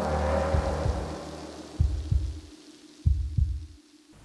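Horror-style transition stinger: a low rumbling drone fades out, then two heartbeat sound effects, each a double thump, about a second apart.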